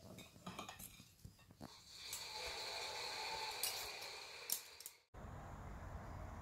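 Cutlery clinking against plates and bowls during a meal. A steady rushing noise follows for about three seconds and is the loudest part. It cuts off abruptly near the end, giving way to a low outdoor rumble.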